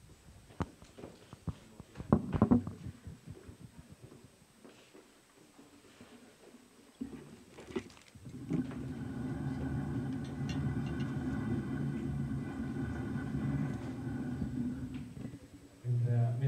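Knocks, scrapes and footsteps of chairs and a small table being moved on a wooden stage, loudest about two seconds in. About eight and a half seconds in, a steady low hum with several held tones starts and runs until just before the end.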